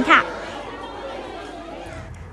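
A woman's voice finishing a word, then a low, indistinct chatter of many people talking at once.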